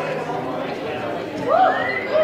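The last acoustic guitar chord of a song fades out. About one and a half seconds in, audience members start whooping and cheering with high calls that rise and fall.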